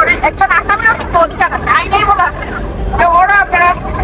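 A person talking, with short pauses, over a steady low background rumble.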